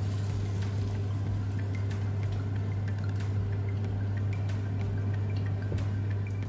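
Thick blended tomato scraped with a spatula from a plastic food-processor bowl and poured into a frying pan of cooked ground meat, with soft scraping, small ticks and a wet pouring sound, over a steady low hum.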